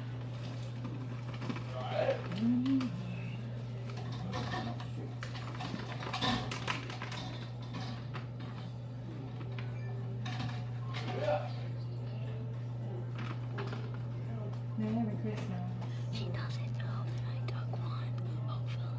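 Rustling and crinkling of a cookie-mix pouch being opened and emptied into a mixing bowl, with scattered light clicks and knocks, over a steady low hum. Soft murmured voices come and go.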